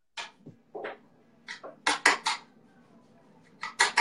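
A run of short, sharp clicks and clinks from small hard objects being handled, about six in the first two and a half seconds and a few more near the end, over a faint low hum.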